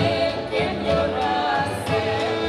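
Live Ukrainian folk band music: two women singing a melody in harmony, accompanied by violin and accordion.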